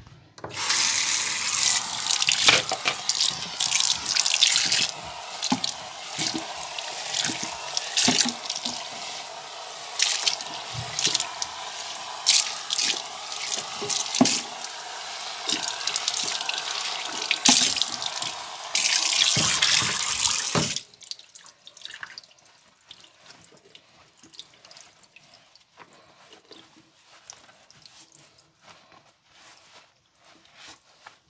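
Water running from a sink's pull-out spray tap onto towels being rinsed over the basin, for about twenty seconds. The tap shuts off suddenly, and only faint drips follow.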